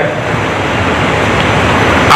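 Steady, even rushing background noise with no distinct tones or events.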